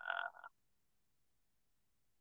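A man's voice trails off for about half a second, then near silence.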